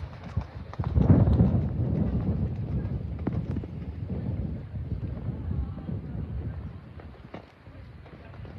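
Horse cantering on a sand arena, its hoofbeats loudest about a second in as it passes close, then fading as it moves away.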